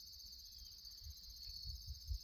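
Insects, crickets by the sound of them, keeping up a steady high-pitched chorus, with a faint low rumble underneath.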